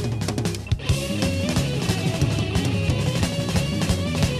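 Hard rock instrumental: a drum kit playing a fast, driving groove with electric guitar and bass. A held chord gives way under a second in to a few sharp drum hits, then the full band comes in.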